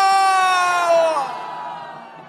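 A man's long, loud shouted cry of "Juyeo!" ("O Lord!") through a microphone and loudspeakers, held on one pitch and dropping away about a second in, with a large crowd crying out along with him; the crowd's voices trail on after his call ends. It is the first of a threefold cry of "Lord!".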